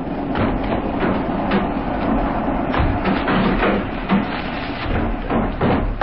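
Radio-drama sound effects of people climbing down out of a truck: a busy run of irregular knocks, clatters and scrapes, like doors, boots and bodies against the vehicle.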